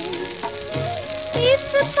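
A 1950s Hindi film song with female vocals: a held note over a drum beat and accompaniment, then the singer starts the next line about one and a half seconds in. An even hiss runs underneath.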